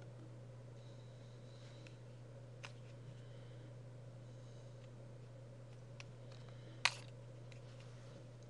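Quiet room tone: a steady low hum with a few isolated faint clicks, the sharpest about seven seconds in.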